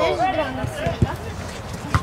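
Players' voices calling on the pitch, with two sharp thuds of a football being kicked, one about a second in and one near the end.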